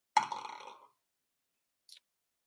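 A single sudden throaty vocal sound, about half a second long, like a burp or grunt. A brief hiss follows near the end.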